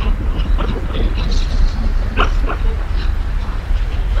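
A Shih Tzu's short nasal and vocal sounds, a quick run of them with a brief pitched one just past the middle, over a steady deep rumble.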